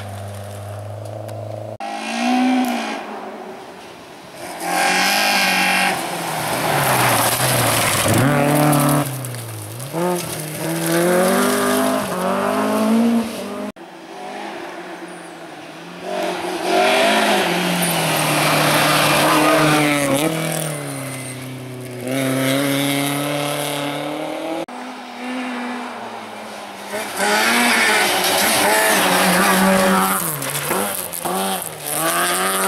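Rally cars driving hard past the microphone one after another on a gravel stage, their engines revving up and dropping in pitch again and again through gear changes. The sound cuts off abruptly between cars about 2, 14 and 25 seconds in.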